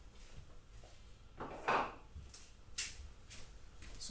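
Faint handling noises from objects being moved about: a few short rustles and knocks, the loudest about a second and a half in and a briefer one near three seconds.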